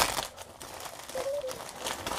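White padded plastic mailer bag being torn open at the top, with a sharp rip at the start and then crinkling and rustling plastic as it is pulled apart.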